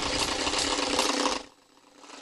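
A fast, evenly pulsing, engine-like mechanical noise that cuts off abruptly about one and a half seconds in, leaving near silence.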